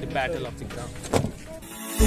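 Brief snatches of voices over faint background music, with a single sharp knock a little over a second in.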